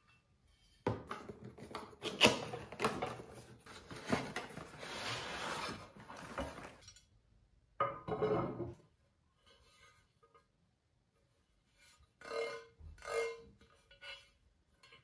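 Cardboard packaging of a grill pan being slid out of its sleeve and opened, rustling and scraping with clicks for about six seconds. The pan is then set down on the tabletop with a short clatter, and two brief clunks follow near the end as it is handled.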